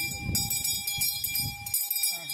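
A small brass hand bell rung continuously in rapid strokes, its bright ringing tone held steady throughout, as is usual during a puja offering.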